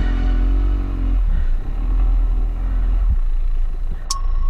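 Dirt bike engine running at trail speed, its pitch shifting in the first second, over a heavy steady low rumble.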